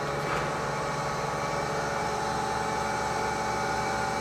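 Gear-driven machine running steadily: an even mechanical hum with several constant tones from its motor and gear train.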